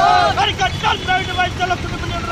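A group of protesters shouting slogans in chorus, with loud high-pitched voices breaking into short, clipped syllables, and street noise underneath.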